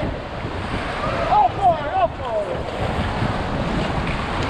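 Rushing whitewater of river rapids around an inflatable raft, a steady roar with wind buffeting the microphone. A voice calls out briefly in the middle.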